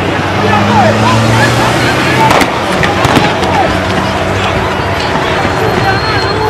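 Street recording of a shooting: people's voices and shouts over a vehicle engine running, with a few sharp gunshot cracks about two to three seconds in.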